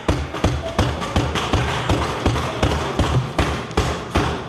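Members thumping their wooden desks in approval in a parliamentary chamber: rapid, uneven thuds, several a second, over a light crowd murmur.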